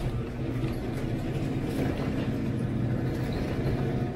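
Electric garage door opener running with a steady motor hum as the sectional garage door lifts.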